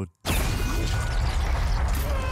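Sci-fi action-movie soundtrack: a sudden cut to silence, then a dense wash of fight sound effects over a heavy low rumble.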